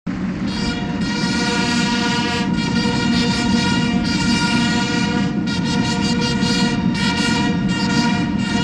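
Brass band playing slow, long-held chords, the notes changing every second or so.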